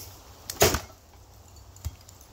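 A single heavy axe blow chopping into a split log: a sharp thunk about half a second in, with a short ringing tail. A fainter knock follows near the end.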